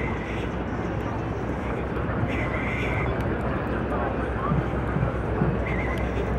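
City street ambience: a steady wash of traffic noise with the voices of passers-by talking.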